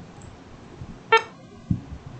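A short electronic error beep from the computer about a second in, as SAP GUI rejects the entry with an 'Enter valid external number range' message. A few soft low thumps fall around it.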